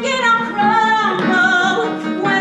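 A female voice singing a show tune with instrumental accompaniment.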